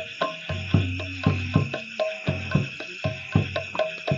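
Drums struck in a quick, uneven rhythm of about four strokes a second, over a steady trill of crickets.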